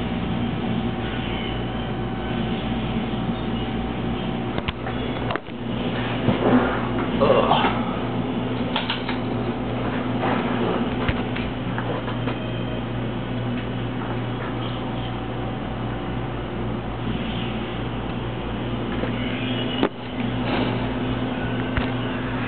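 A steady electrical hum, low with a buzzing overtone, from powered equipment, broken by a few brief knocks and faint voice-like sounds around the middle.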